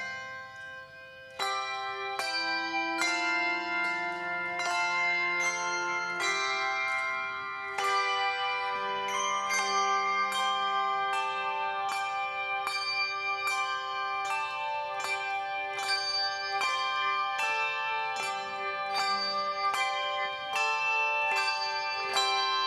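Handbell choir playing a piece: chords of struck handbells that ring on and overlap, with new strikes about once or twice a second. The sound drops back briefly about a second in, then the next chord comes in loudly.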